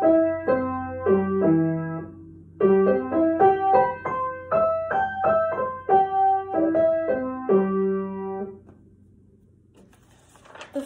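Upright acoustic piano playing arpeggios, rippling broken chords up and down the keyboard, in two runs with a brief pause between them. The second run ends on a held chord about eight and a half seconds in, and the notes die away.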